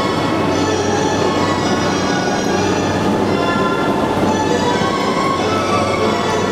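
JR East E235 series electric train running, heard on board its motor car, with a steady rumble and a set of thin high tones from the traction inverter and motors.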